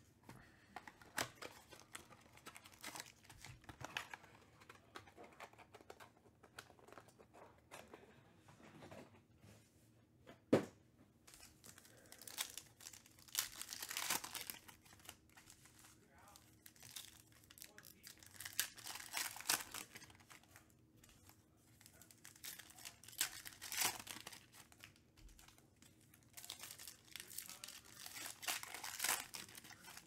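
Foil trading-card pack wrappers being torn open and crinkled, in irregular rustling spells, with one sharp click about ten seconds in.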